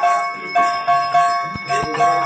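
Temple bells ringing in quick, repeated strikes, each stroke renewing a steady metallic ring, as bells are rung through an arati worship.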